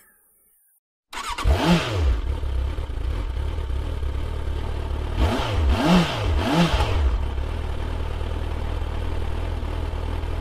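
Motorcycle engine coming in about a second in, revving up once and dropping back, then blipped three times in quick succession around the middle, running steadily between and after.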